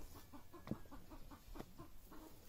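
Chickens clucking softly, a quick irregular run of short, quiet clucks.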